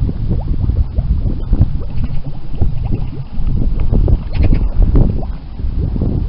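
Water welling up from a submerged pipe outlet into a shallow pool, bubbling and gurgling continuously in a dense, irregular run of plops.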